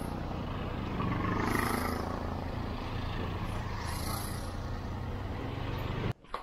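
Auto-rickshaw (tuk-tuk) engines running close by as three-wheelers drive past one after another, a steady low engine note.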